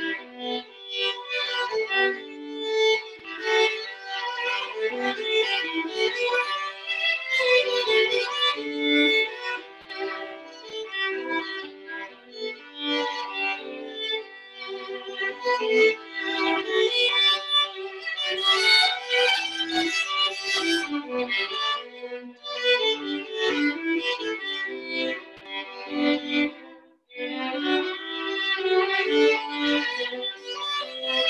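Two violins playing a duet, a busy passage of many quick notes. The playing breaks off briefly about three seconds before the end, then resumes.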